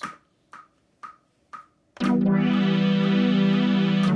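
Four metronome clicks half a second apart, a one-bar count-in at 120 BPM. About two seconds in, a sustained synthesizer chord from a Juno sound module starts, triggered from a custom chord pad on a Squarp Pyramid sequencer.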